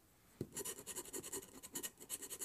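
A scratch-off lottery ticket being scratched with a handheld scratcher tool, with quick repeated rasping strokes, several a second, starting about half a second in.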